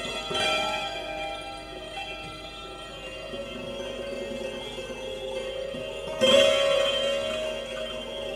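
Santoor, the Indian hammered dulcimer, played slowly in an Indian classical style, its struck strings ringing on in sustained notes. A louder cluster of strokes comes about six seconds in.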